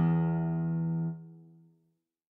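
A single low guitar note, the open low E string, rings on from the tab's playback and dies away, falling quiet a little before two seconds in.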